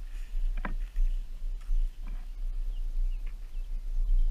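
Low wind-and-handling rumble on a GoPro mounted on an RC speed boat that is out of the water, with a light knock about half a second in and a fainter one later.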